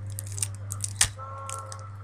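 A small plastic-and-foil candy packet crinkling as it is opened by hand, in many short rustles with one sharp snap about a second in.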